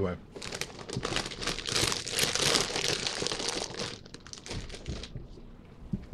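A foil-lined Lay's potato chip bag crinkling loudly as it is handled, from about half a second in to about four seconds, loudest in the middle, then a few faint crackles.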